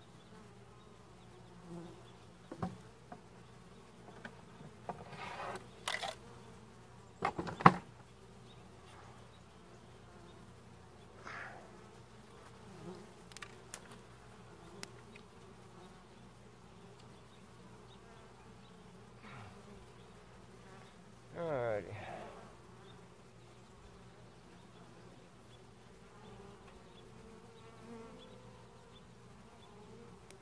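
Honeybees buzzing around an opened hive, a steady hum, broken by scattered knocks and scrapes as the wooden hive boxes and frames are handled. The loudest knock comes about a quarter of the way through, and there is a brief louder burst with a sliding pitch about two-thirds of the way through.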